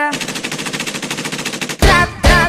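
A machine-gun sound effect dropped into a Brazilian dance track: a rapid run of shots, about ten a second, replacing the singing for almost two seconds. The drum beat comes back in near the end.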